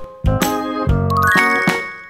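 Background music with chime sound effects, including a quick rising run of bell-like notes about a second in.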